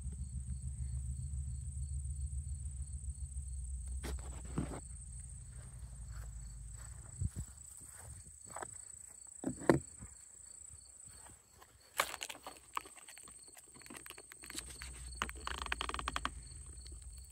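Crickets chirping steadily in a high, pulsing drone, over a low rumble that fades after about seven seconds. From about four seconds in there are scattered clicks and knocks of the camera being handled and of footsteps in grass, the loudest near the middle and again near the end.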